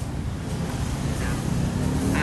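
Street traffic: a steady low rumble of passing vehicles.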